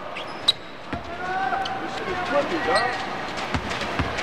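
A basketball bouncing a few times on the hardwood court at the free-throw line, over arena crowd voices.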